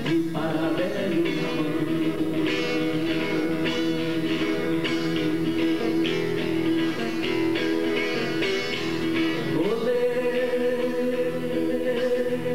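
A man singing long held notes without words over steadily strummed acoustic guitar, live on stage. Near the ten-second mark the voice slides up to a higher note and holds it.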